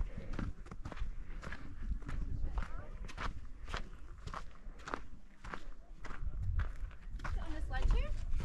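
Footsteps of a hiker walking on a sandy sandstone trail, a steady tread of about two steps a second.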